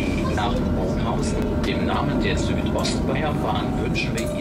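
Steady low rumble of a moving vehicle heard from inside its cabin, with people talking indistinctly over it.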